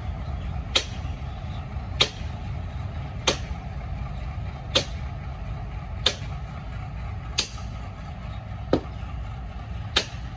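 Twin Bangladesh Railway diesel locomotives rumbling steadily as they pull slowly away. A sharp click repeats about every 1.3 s.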